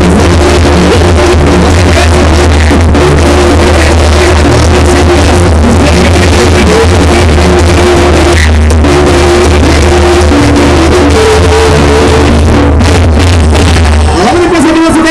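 A Mexican banda brass band playing live, with a heavy, steady bass line under a brass melody. It is recorded very loud and sounds distorted.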